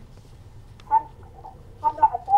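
Short, soft laughter about a second in, and again starting near the end, with quiet in between.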